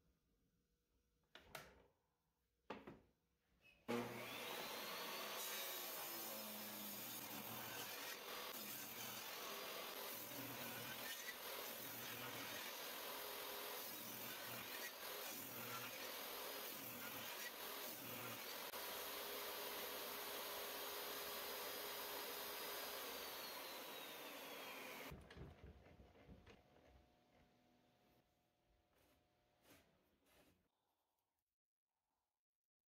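Portable table saw switched on about four seconds in with a short rising whine, running steadily while cutting ash boards for some twenty seconds, then switched off and winding down. A few light knocks of wood being handled come before it starts.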